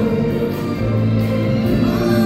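Live band music with a crowd of many voices singing along together.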